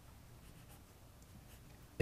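Faint strokes of a dry-erase marker writing numbers on a whiteboard, over quiet room tone.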